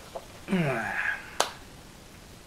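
A man's short wordless vocal sound falling in pitch, then a single sharp click about a second and a half in.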